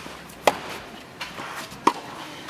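Tennis ball struck hard by rackets twice in a rally, sharp pops about a second and a half apart, with fainter ticks between them.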